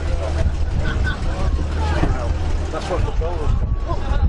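Low, steady engine rumble of a late-1940s American coupe rolling slowly past at low speed, with people talking in the background.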